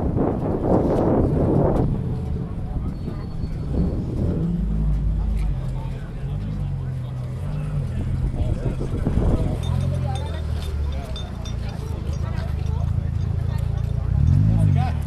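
A car engine running close by, a low rumble whose pitch steps up and down with light throttle, under the chatter of a crowd.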